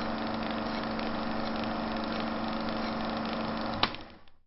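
A steady mechanical hum with a constant low drone, ended by a sharp click near the end, after which it quickly dies away.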